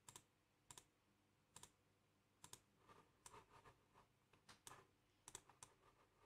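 Near silence broken by faint, sparse computer mouse clicks: a few single clicks just under a second apart, then softer scattered ticks through the middle.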